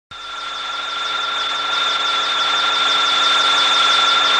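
Steady high-pitched electronic whine made of two held tones over a hiss, fading in and growing louder over the first couple of seconds.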